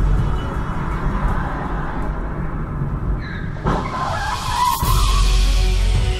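A car's tyres screech on asphalt for about a second and a half, starting a little past halfway, over loud background music with a heavy bass.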